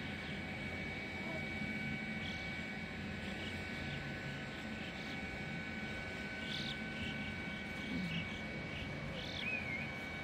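A flock of black birds calling, short high calls coming every second or two, with a few louder ones near the end. A steady high whine runs underneath.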